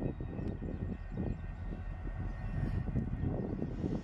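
CSX diesel-electric locomotives rumbling as they creep forward at low speed on a switching move: a steady low engine drone without sharp knocks or a horn.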